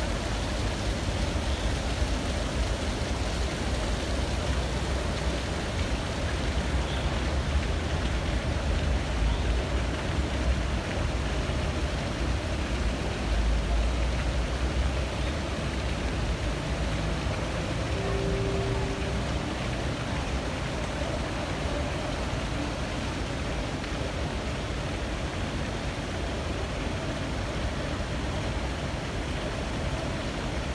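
Steady rush of water from ornamental fountain jets in a pool, over a low, constant rumble of city traffic.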